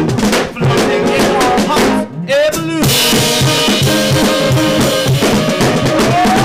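Live jazz-punk band playing: drum kit, electric guitar, bass and saxophone. The band drops out briefly about two seconds in, then the full band comes back in with steady drum hits.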